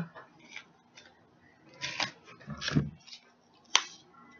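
Light kitchen handling sounds: scattered small clicks and rustles as cheese sticks and packaging are handled on the counter, with a brief murmur around the middle and a sharp click near the end.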